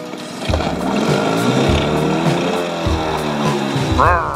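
Upbeat background music with a small two-stroke outboard motor running under it, its pitch rising and falling as it revs.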